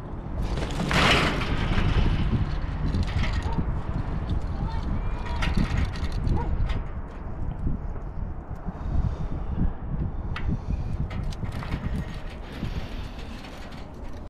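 Wind buffeting the microphone in a steady low rumble, with scattered clicks and rustles of the jump rope and its metal hardware being handled.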